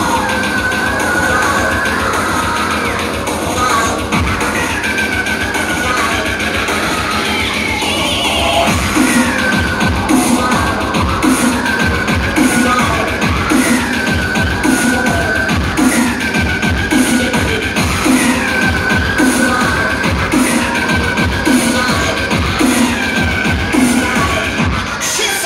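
Loud electronic dance music from a DJ set over a club sound system. A fast, steady kick-drum beat comes in about five seconds in, under a short high synth phrase that repeats.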